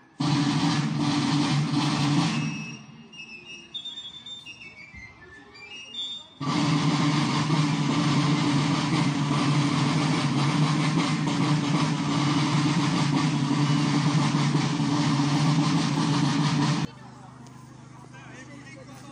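Marching-band snare drums beating a loud, dense roll in two stretches, a couple of seconds and then about ten seconds, each starting and stopping abruptly; between them fifes play a few high notes.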